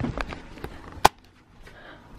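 Computer keyboard keys clicking as they are pressed: a run of short clicks, with one sharper click about a second in.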